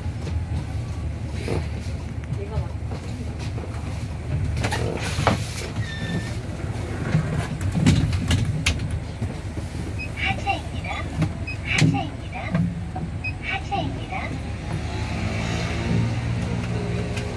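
Inside a moving city bus: a steady low rumble from the bus and road, with knocks and rattles from the cabin. A short electronic beep sounds about six seconds in.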